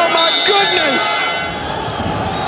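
Basketball arena game sound during live play: a loud, steady crowd with short sneaker squeaks on the hardwood court.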